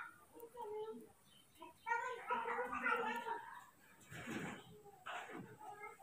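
Newborn baby monkey crying for its mother with high, wavering calls: a short one about half a second in, then a longer run of calls from about two seconds in. Two softer, rougher sounds follow near the end.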